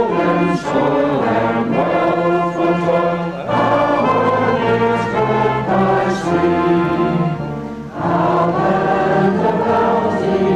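Voices singing a slow hymn-like tune with brass band accompaniment, in long held chords, with a short break between phrases about eight seconds in.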